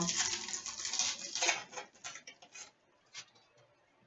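Foil wrapper of a 2011/12 Panini Titanium hockey card pack crinkling and tearing as it is opened, busiest in the first second and a half, then a few lighter rustles as the cards are handled, dying away near the end.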